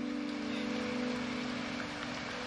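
Soft dramatic underscore holding a steady low chord over an even hiss.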